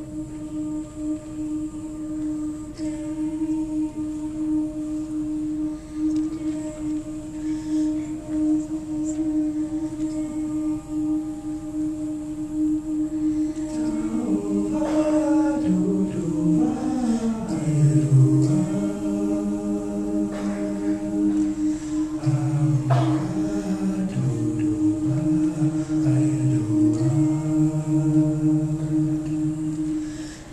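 Vocal jazz ensemble singing a cappella. One steady note is held at first; about halfway through, lower voices come in beneath it with a moving bass line and chords, and the sound grows fuller.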